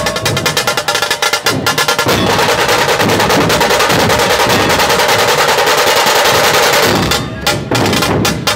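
Dhol-tasha ensemble playing loudly: dhol barrel drums and tasha drums beating together. About two seconds in, the drumming turns into a fast continuous roll that holds for about five seconds, then breaks back into separate beats near the end.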